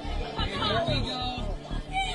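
Several young voices chattering and calling out, with the thin sound of a phone recording, over background music.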